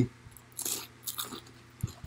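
A person biting into and chewing a crunchy fried pork rind dipped in pumpkin seed butter: a few crisp crunches, the loudest about half a second in, then softer chews.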